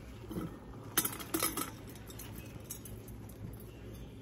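Dry freeze-dried crumbles tipped from a metal tray through a stainless steel canning funnel into a glass jar. A few faint clinks and rattles come about a second in.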